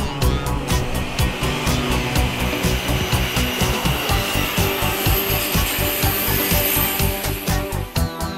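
Background music with a steady beat, mixed with the rushing wheel-and-rail noise of a passing electric train, which swells and then fades away just before the end.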